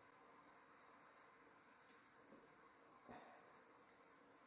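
Near silence: faint room hiss, with one faint short sound about three seconds in.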